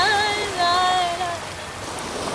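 A woman singing unaccompanied, holding two long wordless notes that bend in pitch and stop about a second and a half in, over a steady hiss of breaking surf and wind.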